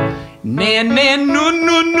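A piano chord rings and dies away. About half a second in, a man sings a vocal exercise on "nah", sliding up and holding a higher note of a 1-3-5-5-5-3-1 arpeggio. It is a larynx-control drill, bright on the first notes with the larynx consciously lowered for the higher ones.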